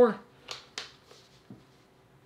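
Two light, sharp clicks a quarter second apart about half a second in, then a faint tick near the end, from small gaming-chair parts being handled and fitted during assembly.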